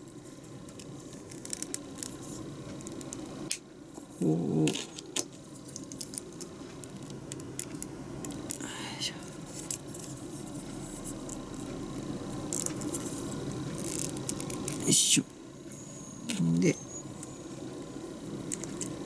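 Small clicks and light rattles of plastic model-kit parts being handled and pressed together, with one louder click about 15 seconds in. Two short murmured vocal sounds, one about 4 seconds in and one near the end.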